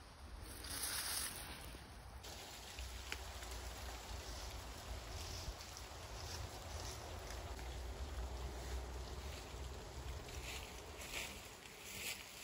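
Quiet forest ambience: a steady low hum of distant road traffic under faint, brief rustles.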